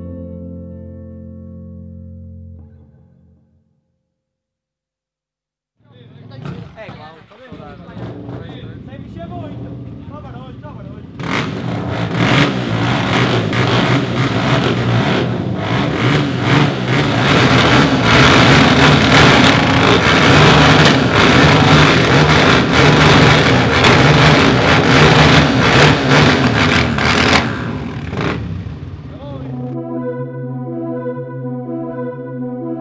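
Background music fades out in the first few seconds. After a short silence, Suzuki motocross bike engines start up and run loudly, revving, from about eleven seconds in until shortly before the end.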